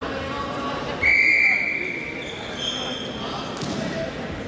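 Referee's whistle blown once, a steady blast of about a second that starts the wrestling bout, followed by a shorter, higher-pitched whistle, over background voices.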